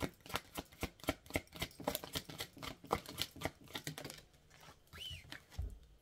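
Hand shuffling a deck of cards: a quick, irregular run of soft card clicks and slaps that thins out after about four seconds.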